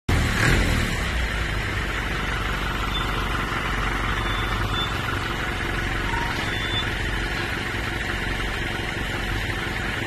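Forklift engine running steadily as the forklift drives slowly up the tilted bed of a flatbed tow truck.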